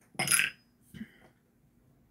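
A plastic glue-bottle cap dropped into a heavy crystal glass vase: one sharp clink with a brief high ring, then a smaller knock about a second in.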